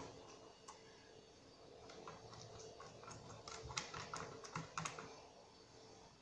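Faint, irregular light taps and clicks of a silicone pastry brush greasing a silicone baking mold with oil, dipped now and then into a small glass bowl.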